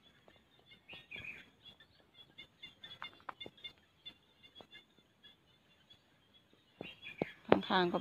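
Small birds chirping faintly now and then, with scattered light clicks and rustles of leaves as someone moves through the plants. A woman starts speaking near the end.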